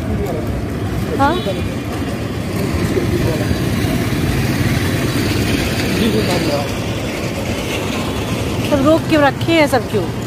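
A motor vehicle engine running close by: a steady low rumble that swells a little in the middle, with voices briefly about a second in and again near the end.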